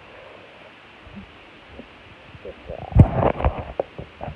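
A horse's muzzle nuzzling and bumping a phone's microphone: faint at first, then about three seconds in a burst of loud thumps and rubbing against the mic with one sharp click.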